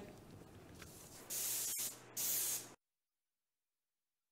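Two short bursts of airy hiss, each under a second, with a click between them, after which the sound cuts off to dead silence.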